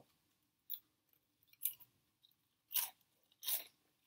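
Crisp veggie straws being bitten and chewed: four separate crunches with quiet gaps between, the last two loudest.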